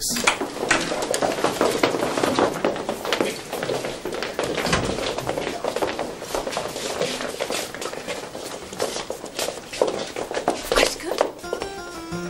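A class of pupils getting up from their desks and leaving the room: chairs and desks scraping and knocking, footsteps and murmured chatter, with background music.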